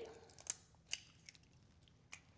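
A hen's egg cracked and its shell pulled apart over a glass measuring cup: two faint, sharp cracks less than half a second apart, then a softer click.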